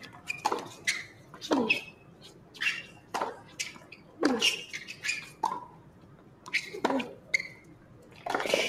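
Tennis rally on a hard court: crisp racket strikes and ball bounces about every second, with short high squeaks of shoes on the court between them. The hits stop shortly before the end.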